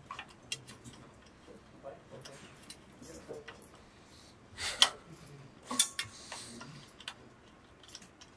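A 5 mm Allen key and a socket tool clicking against a fender bolt and its nut as the bolt is spun in and tightened: scattered light ticks of metal on metal, with two louder clicks near the middle.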